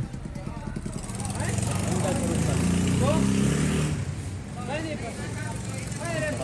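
A vehicle engine running close by, growing louder for a couple of seconds in the middle, with people talking over it.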